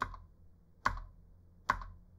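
Three single keystrokes on a computer keyboard, spaced a little under a second apart, the second and third the loudest.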